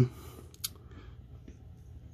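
Faint handling of a small plastic action figure being stood up on a tabletop, with one sharp plastic click about two-thirds of a second in and a couple of lighter ticks after it.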